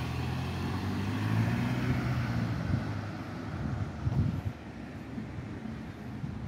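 City road traffic: a motor vehicle passing close by, its engine hum swelling and then fading about halfway through. A few low thumps of wind on the microphone follow.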